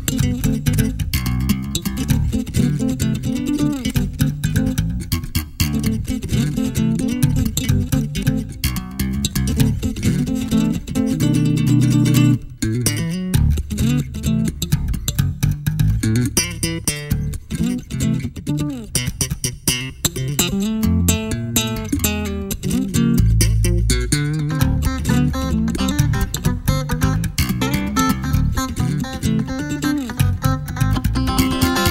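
Instrumental production music led by electric bass guitar, with other plucked guitar parts. The music drops out for a moment about twelve seconds in.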